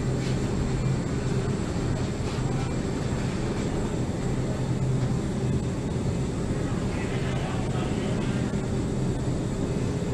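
Steady low mechanical hum and hiss of a supermarket's refrigerated display cases and ventilation, unchanging throughout.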